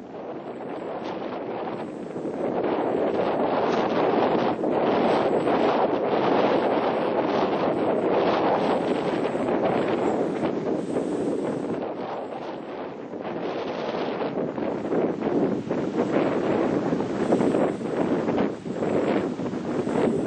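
Wind buffeting the camera microphone: a gusty rushing noise that strengthens about two seconds in and eases briefly near the middle before picking up again.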